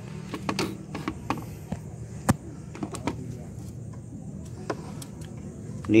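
Scattered light clicks and clinks of a hand tool working the clamp on a rubber coolant hose, with one sharper click a little over two seconds in, over a steady low hum.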